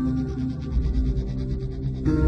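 Ambient background music with sustained low tones, overlaid by a quick, flickering noise texture that stops near the end.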